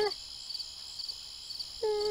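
Faint ambience with a high, evenly repeated chirping, then a short steady-pitched call, like a hoot, near the end.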